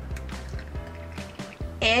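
Carbonated strawberry soda poured from a can into a plastic cup, fizzing up into foam, under background music.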